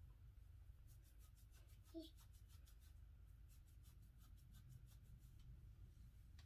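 Near silence over a low steady hum, with faint rapid scratching of fingertips massaging oil into the scalp, about six strokes a second, and one brief soft sound about two seconds in.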